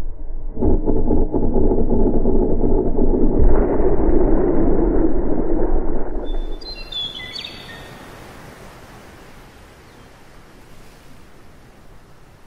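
Muffled rushing of a breaking wave, loud and dull with no treble, dying away about six seconds in. A few short bird chirps follow, then quiet outdoor ambience.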